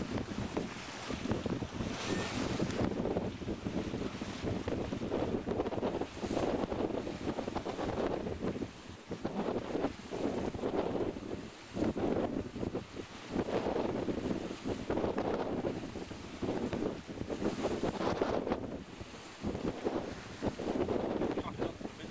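Wind buffeting the microphone over water rushing and splashing along the hull of a heeled sailing yacht under sail. It comes in irregular surges every second or two.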